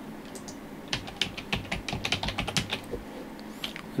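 Computer keyboard typing: a quick run of keystrokes starting about a second in and lasting about two seconds, as a short name is typed into a text field.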